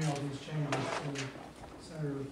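Speech: a person talking in a small meeting room, with one short sharp noise about three-quarters of a second in.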